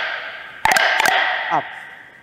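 Wooden almond-cookie molds knocked against a steel-topped work table to shake the pressed cookies loose: two sharp knocks about two-thirds of a second in, each ringing on and dying away over a second.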